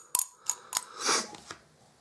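Brass parts of a tube mechanical vape mod clicking lightly against each other as they are handled. There are three or four small clicks in the first second, then a brief soft rustle or scrape about a second in.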